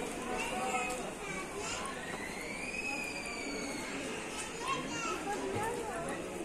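Indistinct chatter of distant shoppers' voices in a large indoor store, with a single drawn-out high tone that rises and falls about two seconds in.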